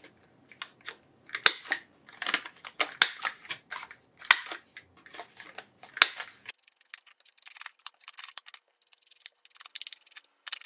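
A small handheld paper punch snapping shut on paper, giving sharp single clicks about five times over the first six seconds. Faint scratchy rubbing on paper follows.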